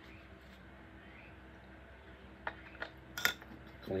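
A few light clicks and clinks as a small paint jar and its lid are handled and the lid is wiped clean with a tissue, three in the second half, the loudest just after three seconds in.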